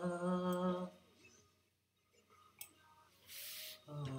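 A man's voice holding a steady hummed or sung note for about a second, then near silence. A short breath-like hiss comes near the end, just before another held note begins.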